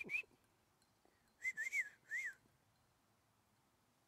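A person whistling short, breathy chirps to call a goat: one chirp right at the start, then a quick run of four rising-and-falling chirps about a second and a half in.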